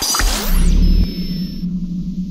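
Logo-animation sound design: a whoosh lands on a deep bass hit a quarter second in, followed by a held synthesized low drone with a thin high tone that drops out near the end.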